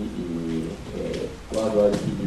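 A man's voice drawing out long, level vowel sounds, then speaking again about one and a half seconds in, as he reads out a web address letter by letter.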